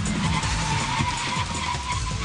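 A Mini hatchback braking hard to a stop, its tyres skidding with a wavering squeal that sets in about halfway through. Background music with a steady kick-drum beat plays underneath.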